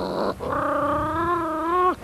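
A short noisy burst, then a single long, pitched vocal call that holds steady, rises slightly and cuts off suddenly near the end.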